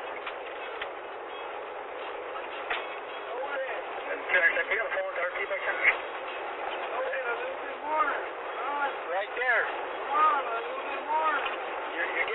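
Steady road noise inside the back of a moving police car. Indistinct voice sounds come and go over it, most of them in the second half.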